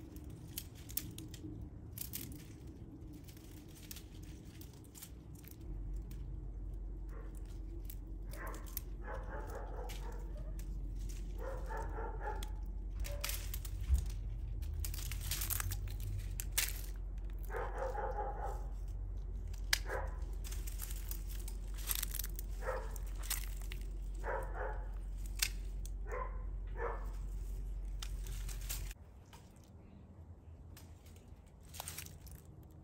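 A dog barking in short bouts, over the crackle and snap of dry vines being pulled off a wire trellis. A low steady hum runs under most of it and stops near the end.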